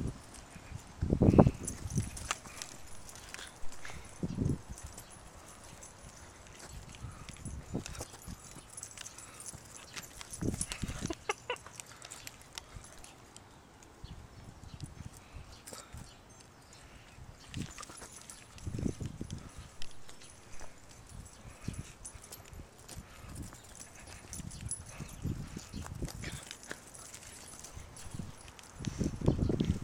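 A basenji running on a grass lawn: scattered low thuds and rustles of its footfalls and the log it carries hitting the ground. The loudest bump comes about a second in.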